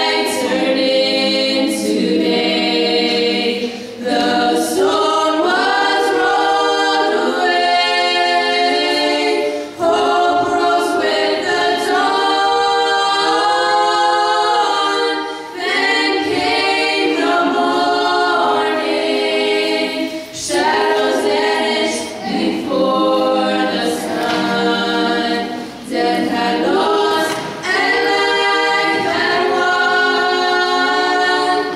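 Four girls' voices singing a cappella in close harmony into handheld microphones, in sustained phrases of a few seconds with short breaks for breath between them.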